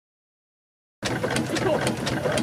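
Burrell Gold Medal steam tractor's engine running, its motion work giving a steady rhythm of sharp clicks about three to four a second. The sound starts suddenly about a second in.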